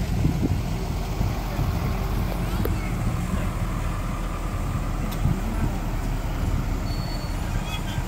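A red fire engine's engine running with a steady low rumble as the truck drives past, with no siren.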